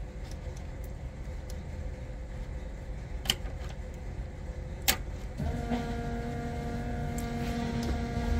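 Two sharp clicks as the ignition is switched off and back on. About five and a half seconds in, a steady electric hum starts on the stalled EFI system once the power comes back.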